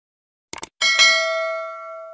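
Subscribe-animation sound effect: a quick double mouse click about half a second in, then a notification bell ding that rings out and fades over about a second and a half.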